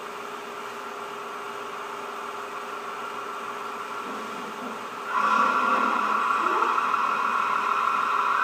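A faint steady hum, then a louder steady motor whir, like an electric fan or other small appliance, that comes on suddenly about five seconds in and keeps running.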